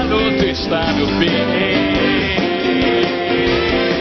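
Live band music from a concert stage, playing loud and steady throughout.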